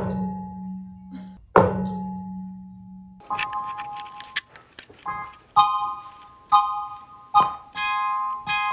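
Electronic keyboard notes: two held low notes struck about a second and a half apart, then bright chords struck roughly once a second.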